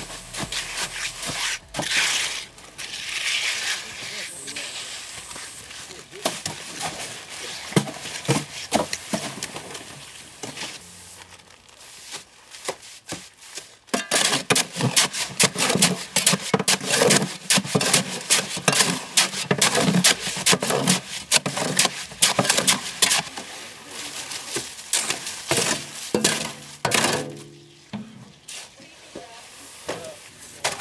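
Concrete work: a trowel scraping and packing wet concrete, then two shovels scraping and chopping wet concrete mix in a wheelbarrow in quick repeated strokes from about halfway through, with music and voices in the background.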